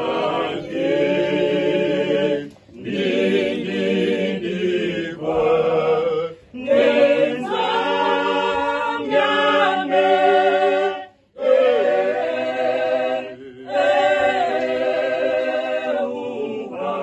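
A small mixed choir of men's and women's voices singing unaccompanied, in long phrases broken by short pauses for breath about four times.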